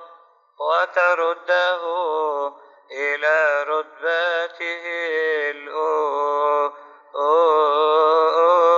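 A male voice chanting a Coptic liturgical hymn in long melismatic phrases, the pitch wavering over held vowels. There are short breaks about half a second in, near three seconds in, and just before seven seconds.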